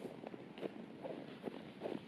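Faint footsteps on packed snow, a few soft, irregular steps.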